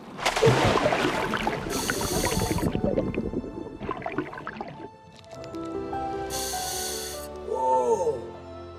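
A splash into water followed by a few seconds of bubbling and gurgling, then music with held tones.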